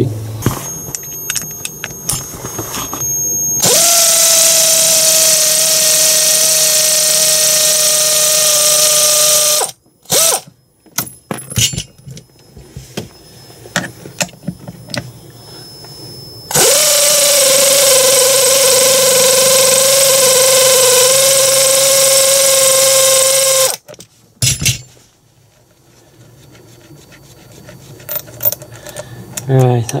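Power ratchet on a socket extension undoing bolts in two long runs of about six seconds each, a steady whine with hiss. Between the runs come clicks and rattles of the socket and tool being handled.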